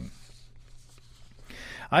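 A pause between sentences of a man's spoken narration: faint room tone with a low steady hum, then a soft intake of breath near the end just before he speaks again.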